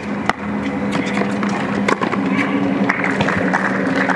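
Tennis ball being struck by rackets and bouncing on a hard court during a rally. There is one sharp hit soon after the start and fainter knocks later, over a steady low hum.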